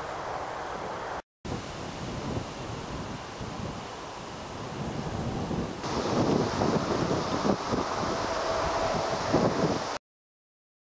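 Wind noise on the camera's microphone, a steady rushing haze that drops out for a moment about a second in. After a cut just past the middle it comes back louder and gustier.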